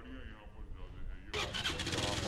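Faint voices, then about a second and a half in, street noise comes in suddenly and much louder, with a motor vehicle's engine running close by.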